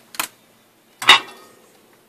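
Soldering iron being set into the coiled-wire holder of its stand: two short metal clinks, the second louder, with a brief ring.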